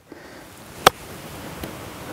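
A single crisp click of an 8-iron striking a golf ball on a short chip-and-run shot off firm links turf, just under a second in, over a faint steady background hiss.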